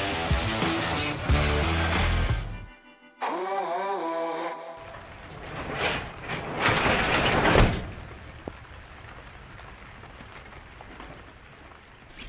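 Background music with a steady beat cuts out about three seconds in, followed by a short wavering tone. Then a roll-up garage door is pushed open, rattling up along its track for about two seconds and stopping sharply.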